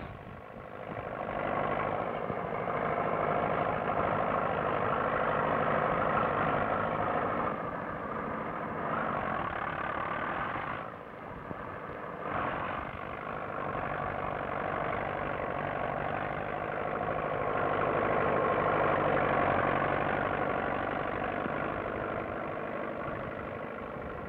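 A vehicle engine running steadily, with a short break about eleven seconds in.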